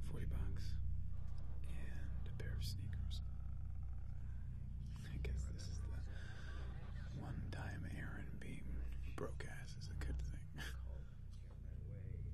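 Faint, indistinct speech over a steady low hum.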